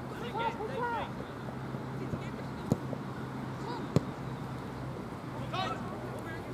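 Two sharp thuds of a football being kicked, about a second and a half apart, against distant shouting from players on the pitch.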